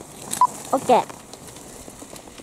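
A person's short shouts, two quick calls that fall in pitch about half a second apart, over the hiss of a skier's edges carving across snow.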